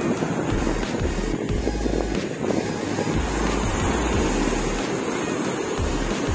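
Waves breaking and washing through the shallows, with gusts of wind rumbling on the microphone.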